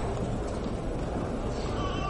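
A horse whinnying, a high call that starts near the end, over the general noise of the arena.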